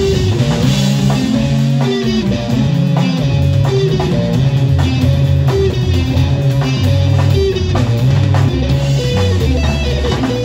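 Live instrumental jazz-metal trio playing loud: distorted electric guitar and Bass VI over a drum kit, with low held bass notes and busy drum hits.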